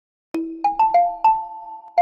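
Short logo jingle of bright mallet-percussion notes, like a marimba. After a moment of silence, five notes come in quick succession, each ringing on, and a sixth starts near the end.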